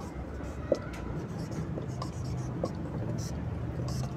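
Marker pen writing on a whiteboard in short strokes, with a few brief squeaks, over a low steady hum.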